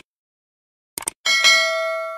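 Sound effects for an animated subscribe button: a quick double mouse-click about a second in, followed at once by a bright notification bell chime that rings on and slowly fades.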